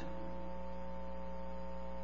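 Steady electrical mains hum, several fixed tones that hold level without change.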